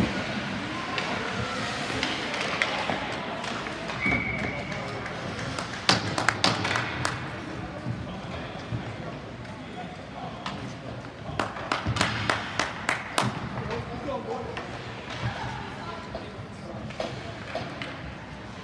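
Ice hockey rink sound: a background of spectators' voices, a short single blast of a referee's whistle about four seconds in, and bursts of sharp knocks and clacks of sticks and puck a couple of seconds later and again in the middle.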